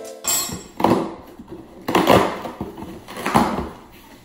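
A cardboard shipping box handled and opened on a countertop: several short scraping, rustling strokes about a second apart as the flaps and packing are pulled open.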